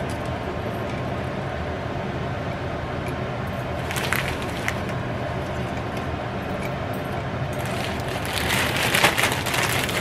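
Plastic bag of soup and oyster crackers crinkling and crackers crumbling as they are taken out by hand and dropped into a bowl: a short burst about four seconds in and a longer one over the last couple of seconds, over a steady low hum.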